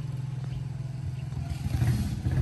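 A motor vehicle's engine running nearby, a low steady hum that grows louder toward the end as it approaches.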